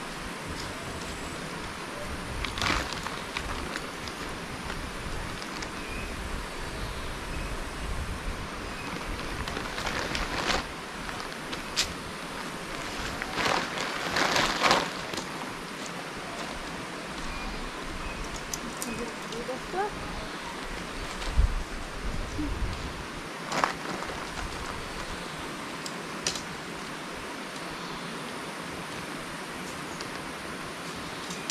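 Tent fabric and poles of a Decathlon Quechua Arpenaz tent being handled during pitching: a few short, louder rustles and knocks as the poles are threaded and the flysheet is moved, over a steady outdoor hiss.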